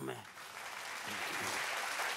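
Studio audience applauding: the clapping swells in the first half second and then holds steady, with a faint voice under it.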